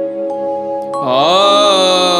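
Male singer performing a Bengali Agomoni devotional song over held instrumental chords. About a second in, his voice enters, sliding up into a long note with a slight vibrato.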